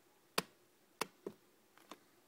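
Four sharp taps or clicks, irregularly spaced, the first the loudest: handling noise from hands on plastic enclosures and the phone.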